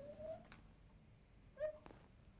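Faint squeaks of a marker drawing on a glass lightboard: a short rising squeak at the start and another about one and a half seconds in, with a couple of light ticks.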